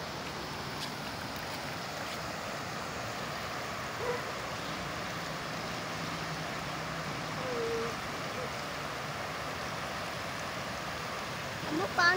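Muddy floodwater rushing through a rain-swollen storm drain and spilling over a low concrete ledge, a steady rush of water. Faint distant voices call out briefly, about four seconds in and again near the middle.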